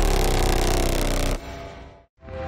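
Electronic background music ending: a held chord whose upper notes glide slightly downward, breaking off about a second and a half in and leaving a short fading tail.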